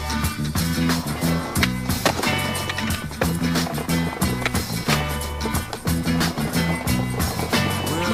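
Soundtrack music with a steady beat and a repeating bass line.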